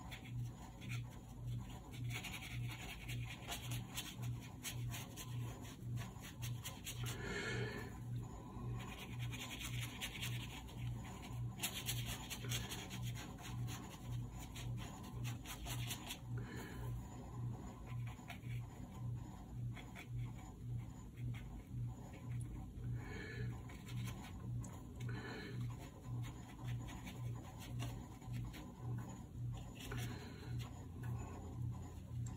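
Watercolour brush scrubbing and dabbing paint onto rough Arches watercolour paper, in stretches of soft scratching, under a low hum that pulses about twice a second.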